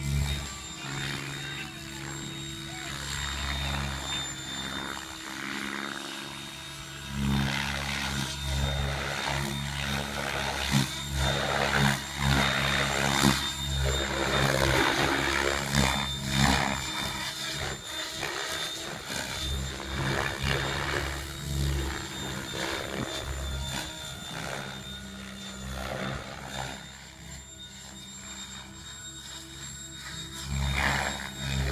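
Electric Mikado Logo 600 SX RC helicopter flying 3D aerobatics: its rotors and drive give a steady hum with a high whine over it, swelling and fading as it manoeuvres. The sound is loudest in the middle stretch and falls away near the end.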